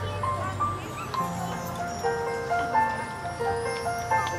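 Live band playing an instrumental passage: a melody of held notes stepping from pitch to pitch over a low accompaniment.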